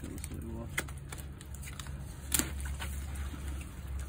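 Camper's water pump running with a low steady hum as it draws antifreeze from a plastic gallon jug. Light clicks and taps from the jug being handled, with one sharp click about two and a half seconds in, after which the hum grows stronger.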